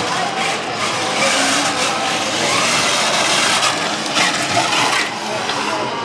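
Small combat robots' electric drive motors whirring and wheels grinding over a gritty concrete arena floor, steady throughout, with the chatter of a crowded exhibition hall behind.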